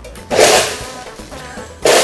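NutriBullet blender running in short pulses, blending a margarita of ice, juice and tequila: a loud burst about a third of a second in that fades over half a second, then a second burst starting near the end.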